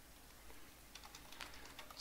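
Several faint, irregular keystrokes on a computer keyboard, typing a short command.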